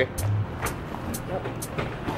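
Steady background hiss of road traffic, with a few faint clicks.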